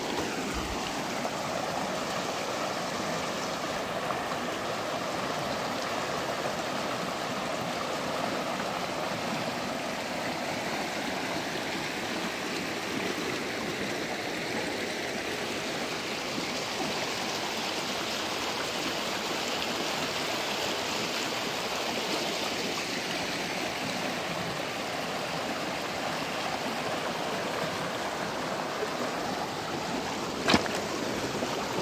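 Shallow, rocky creek rushing and splashing over stones in small riffles: a steady, even rush of running water.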